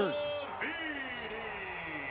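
Lacrosse shot striking the metal goal pipe: a sharp ping at the start that rings for about half a second, then fades into the steady noise of the stadium crowd.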